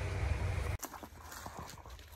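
Footsteps and rustling on forest leaf litter as someone walks through undergrowth, a few soft crunches and snaps. A low rumble of wind or handling on the microphone cuts off abruptly under a second in.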